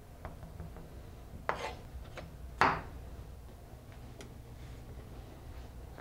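Chef's knife cutting through a bell pepper onto a plastic cutting board: a few soft cuts and taps, the loudest about two and a half seconds in, over a low steady hum.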